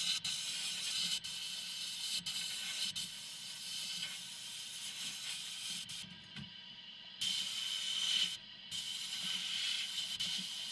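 Sandblasting cabinet's blast gun hissing steadily as compressed air and abrasive stream onto a pressed-steel part. The blast cuts off twice past the middle, once for about a second and once briefly, as the trigger is let go.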